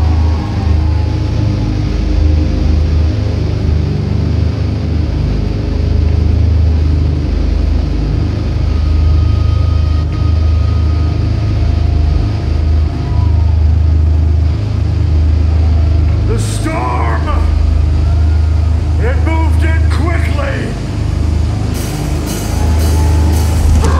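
Heavy, droning low rumble from the band's amplified bass and guitar held between riffs, loud and steady with short breaks. A man's voice shouts over the PA a couple of times in the last few seconds.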